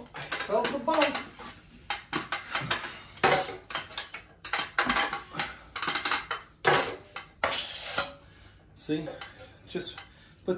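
Steel drywall knife scraping across a sheetrock ceiling patch as joint compound is spread and feathered, in a quick series of short, irregular strokes.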